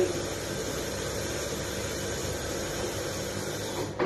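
Water running steadily from a kitchen tap into the sink, an even hiss that cuts off suddenly just before the end.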